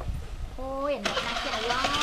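A woman's voice calling out in drawn-out notes, the first held then dropping, a second one rising, over a steady low engine rumble.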